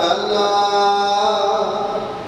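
A man's voice chanting one long held note into a microphone, steady in pitch and fading away near the end.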